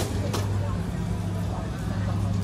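Outdoor walkway ambience: a steady low hum with faint voices of passers-by, and a sharp click right at the start.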